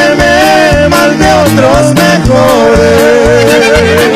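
Norteño band playing a corrido live: a melody in two-part harmony with a wavering vibrato, ending in one long held note, over an alternating bass line and drums.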